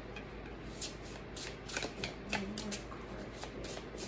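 A deck of oracle cards being shuffled in the hands: a run of soft, irregular card slaps, about four a second, starting about a second in.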